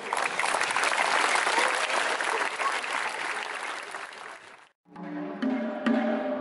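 Audience applauding at the end of a taiko drumming piece. The clapping is loud at first, thins out over about four seconds, then breaks off abruptly.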